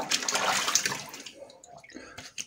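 Water running and splashing at a bathroom sink, a rinse between shaving passes, dying away a little over halfway through.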